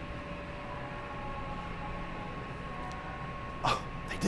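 Steady supermarket background hum with a faint steady tone running through it. About three and a half seconds in comes one short, sharp sudden sound.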